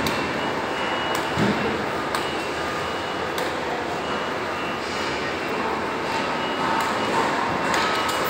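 Steady, fairly loud background noise of a large indoor exhibition hall, with a faint steady high tone running through it. There are two low thuds in the first two seconds.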